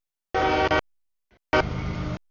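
A freight locomotive's air horn sounding for the grade crossing, heard in short bursts with the audio cutting in and out abruptly between them. About a second and a half in, a brief horn note gives way to the low rumble of the passing train.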